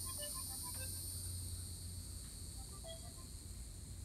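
Steady high-pitched drone of insects in subtropical woodland, with a few faint, short chirps scattered through it.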